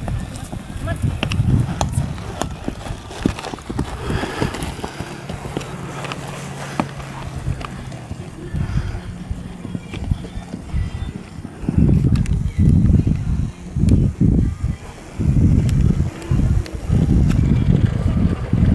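A Tennessee Walking Horse cantering on grass: dull, uneven hoofbeats. Heavier low thuds come several times a second in the second half.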